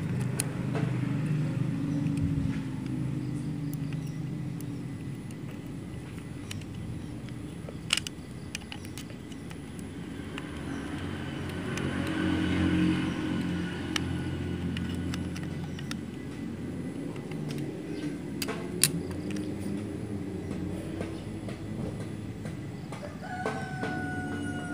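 Low, steady background rumble of motor traffic, swelling about halfway through. A few sharp metal clicks come from a flathead screwdriver working on the sewing machine's thread tension assembly.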